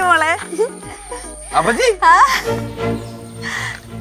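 Two short, high, sliding vocal exclamations, one at the start and one about two seconds in, over background music whose steady low notes come in at the halfway point.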